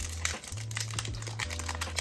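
A foil trading-card pack wrapper being torn open and crinkled by hand: a dense run of fine crackles and ticks.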